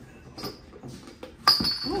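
A sudden loud clank about one and a half seconds in, followed by a high ringing that lasts about half a second, like a hard dish or glass being knocked.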